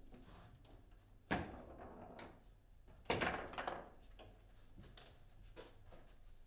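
Foosball table in play: small clicks from the rods, one sharp knock about a second in, then a louder run of knocks and rattles around three seconds in as the ball and player figures strike the table.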